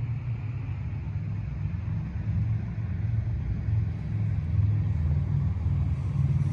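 Low, wavering outdoor rumble with no clear events in it.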